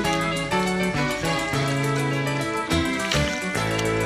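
Background music: a melodic track of held notes that change pitch every half second or so.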